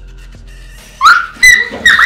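A young girl's high-pitched squeals of laughter: three short, loud bursts in the second half, the first sliding upward in pitch.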